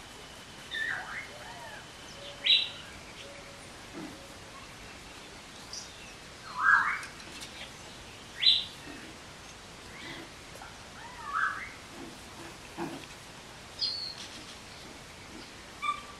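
Puppies giving short, high-pitched yips and squeaks while they play-fight, about a dozen of them at irregular intervals a second or two apart, some rising in pitch.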